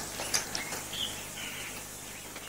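A few faint, short bird chirps over a low background hiss.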